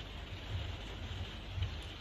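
Light rain falling steadily on a conservatory roof, a faint, even hiss with a low rumble underneath.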